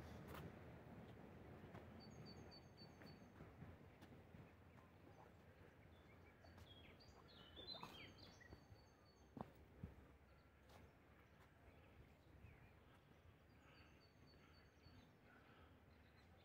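Near silence with faint birdsong: thin, high bird calls come and go three times. A single soft knock sounds about nine seconds in.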